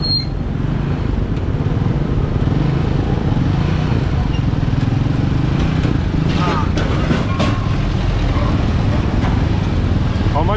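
Motorcycle tricycle engine running steadily with street traffic around it. Brief voices cut in about six and a half seconds in.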